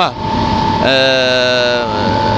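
Sawdust-fired boiler equipment running with a steady drone and a constant high whine. About a second in, a man holds a hesitation sound ("eee") for about a second over it.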